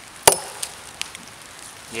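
A single sharp chop of a CRKT Ma-Chete machete's 1075 steel blade into a wooden log about a quarter second in, followed by a couple of faint ticks.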